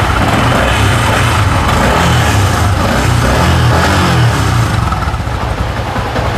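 Yamaha Exciter 150's single-cylinder four-stroke engine running at idle, with the pitch wavering a little around the middle.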